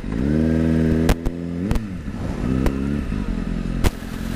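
2007 Kawasaki ZX-6R's inline-four engine accelerating. Its pitch climbs steadily, drops at a gear change about a second and a half in, climbs again and then holds. A few sharp clicks sound over it.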